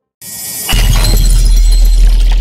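Loud sound effect for an end-card animation: a sudden crash-like noise with a dense crackling hiss, joined by a deep, sustained boom about three-quarters of a second in.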